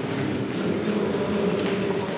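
A steady low hum with faint background noise, the ambient sound of a large hall full of people and equipment.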